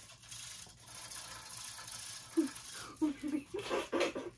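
A steady rustling noise for about two and a half seconds, then a child's muffled giggles near the end.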